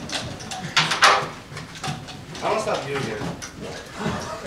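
Indistinct chatter of students' voices in a classroom, with two sharp knocks close together about a second in.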